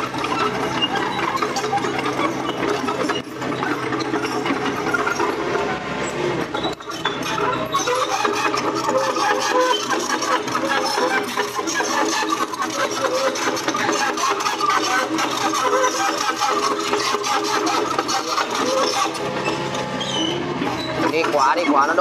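Mini excavator's diesel engine running steadily while the machine works.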